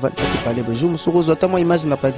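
A man singing into a handheld microphone, holding drawn-out notes, with a short burst of noise just after the start.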